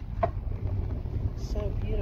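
Wind buffeting a phone microphone on a moving bicycle, heard as a steady low rumble, with one short click about a quarter second in.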